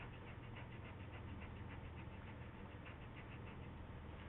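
Eraser rubbed quickly back and forth on drawing paper: faint, evenly spaced rubbing strokes, several a second.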